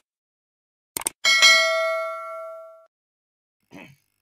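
Subscribe-animation sound effect: two quick clicks about a second in, then a bright notification-bell ding that rings and fades out over about a second and a half.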